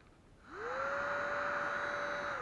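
Small battery-powered DC motor in a converted hand-cranked barbecue blower, switched on about half a second in. Its whine rises quickly in pitch, then holds steady over the rush of air from the fan.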